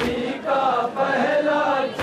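Group of men chanting a Shia noha (mourning lament) together, a sustained melody that rises and falls, with a brief sharp hit at the start and again at the end.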